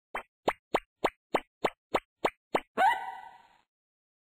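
Cartoon plopping sound effects: nine quick plops, about three a second, each dropping in pitch. They are followed by a short ringing tone that glides up briefly and then fades out within a second.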